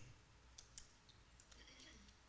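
Near silence: room tone with a couple of faint clicks about half a second in.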